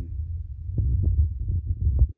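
Low rumble with a few soft knocks, the handling noise of a handheld phone microphone being moved.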